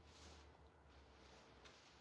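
Near silence: faint room hum, with a soft rustle of a sheer sari being spread out.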